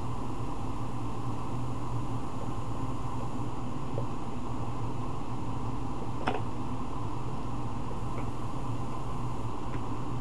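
Steady mechanical hum, like a fan or air conditioner running in a room, with a few light clicks of small hard skate parts being handled. The sharpest click comes about six seconds in.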